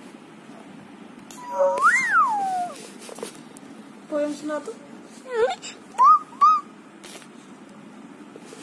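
A young child's playful high-pitched voice without words: one long squeal that rises and falls about two seconds in, then several short chirpy squeaks, faintly cat-like.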